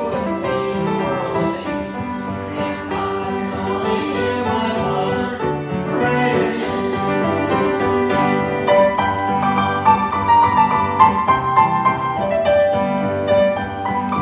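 Upright piano playing a slow old country gospel song, with steady chords and a melody line.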